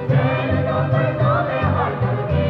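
A group of men singing together, accompanied by guitar and violin.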